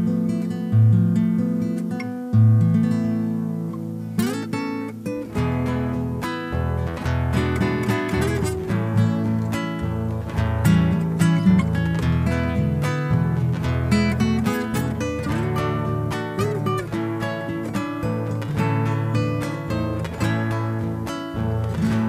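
Two nylon-string classical guitars playing an instrumental passage, with held strummed chords at first and then, from about four seconds in, a busier plucked melody over the chords.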